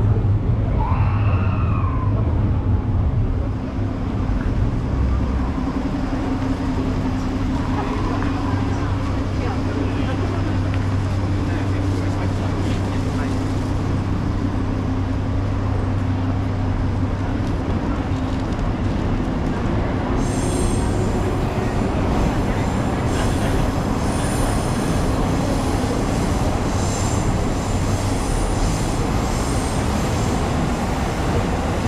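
A train running on the elevated railway tracks overhead: a steady low hum with city street noise and passers-by talking. From about twenty seconds in, faint high ringing tones join in.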